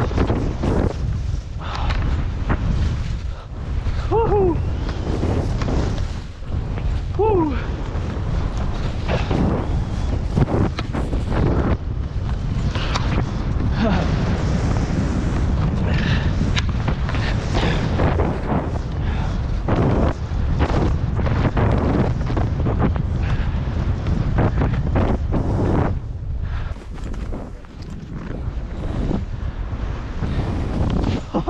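Wind buffeting a skier's camera microphone during a fast powder descent, with repeated swishes of skis turning through the snow.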